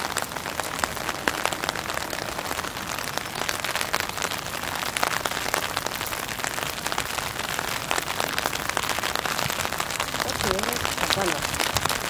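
Steady rain, a dense hiss with many small drops ticking close by.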